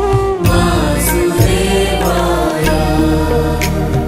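Devotional mantra chanting set to music: a voice sings a repeated chant over instrumental accompaniment with a sustained low drone.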